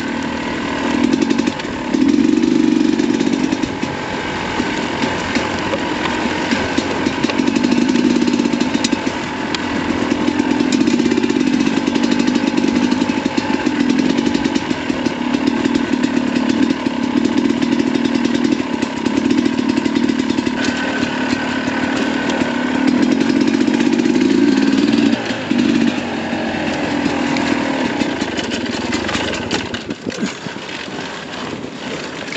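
Sherco 300 SE Factory's single-cylinder two-stroke engine running under way, its note swelling and dipping as the throttle opens and closes.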